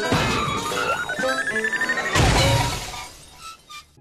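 Cartoon sound effects: a sci-fi beeping that climbs steadily in pitch as a runaway ice cream cart drops toward Eddy, then a loud crash about two seconds in as the cart lands on him.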